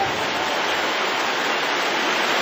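A steady, even hiss of noise with no tune or beat in it.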